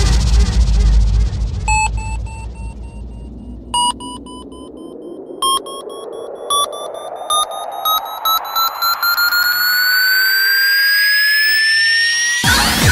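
Electronic music build-up: a synth tone rising slowly and steadily in pitch, joined by short stabs that come closer and closer together. A deep bass rumble fades out in the first two seconds.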